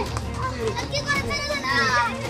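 Children's high-pitched voices crying out in a few short calls, with a longer cry near the end.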